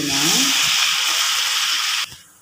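Liquid poured into a hot pan of fried onions, masala and tomato ketchup, hissing and sizzling loudly and steadily as it hits the hot pan. The hiss stops suddenly at the end.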